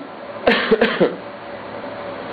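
A man clearing his throat in a few short coughs about half a second in.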